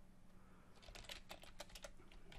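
Faint computer keyboard keystrokes in a quick run, starting a little under a second in, as a word is typed.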